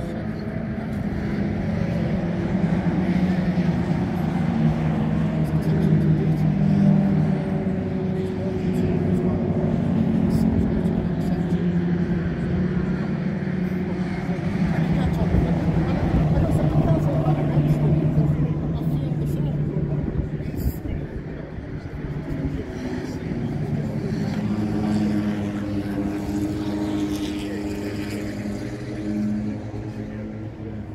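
Car engines running, a steady low hum whose pitch drifts slowly, easing off a little about two-thirds of the way through, with people talking over it.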